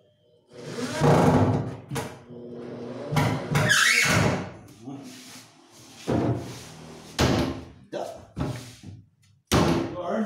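Several sharp knocks on the cabinet's plywood, the strongest about two seconds in and just before the end, with a voice and other handling noise in between.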